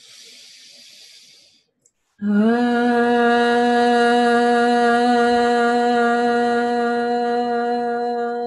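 A woman's long chanted vowel 'Ah', the meditation sound 'A' for releasing the heart's knots, held on one steady pitch from about two seconds in. It is preceded by a brief breathy hiss.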